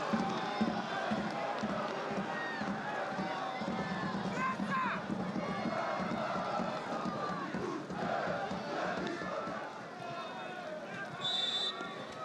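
Football stadium crowd noise: a steady mass of voices and shouts from the stands. Near the end comes a short, high referee's whistle.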